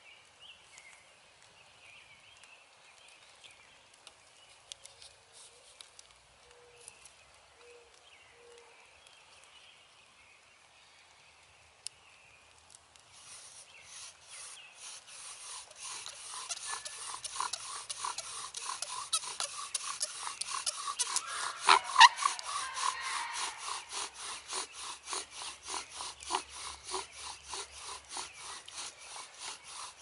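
Wooden bow drill at work: the spindle grinds and rubs in the fire board's burned-in hole with each back-and-forth stroke of the bow, a quick even rhythm that starts about 13 seconds in and grows louder. This is the friction that builds heat and dark wood dust toward an ember. Before it, only a few faint taps as the drill is set up.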